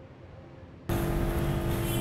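Faint room tone, then about a second in a steady hiss and low hum switches on suddenly and holds: the background noise of a different recording coming in at a cut.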